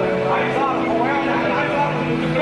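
Several people's voices talking at once and indistinctly, over a steady drone of held low tones.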